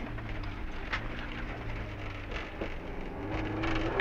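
2000 Subaru Impreza STi rally car's turbocharged flat-four engine running at speed, heard from inside the cabin, under a steady wash of tyre and loose-gravel noise from the road surface.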